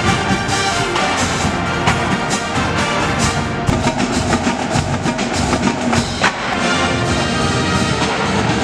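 Varsity marching band playing: brass chords over a drumline of snare and tenor drums beating quick strokes.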